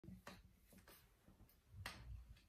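Faint finger snaps: four sharp snaps at uneven spacing, the last near the end the loudest.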